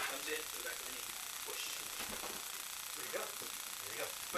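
A short laugh, then faint, indistinct talk over a steady hiss.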